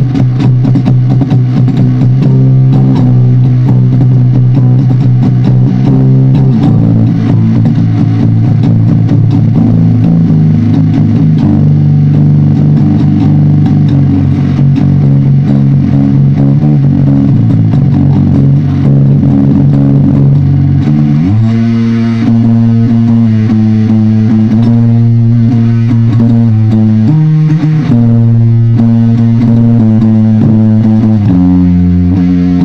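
Loud electric guitar through heavily distorted amplifier cabinets, holding long low chords and notes that change every few seconds, with a marked change of chord about 21 seconds in.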